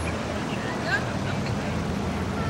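Corvette V8 engines running as a line of the cars drives past close by at low speed, a steady engine and road sound throughout.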